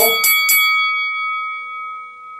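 A small bell struck three times in quick succession, about a quarter second apart, then ringing on with a clear, slowly fading tone.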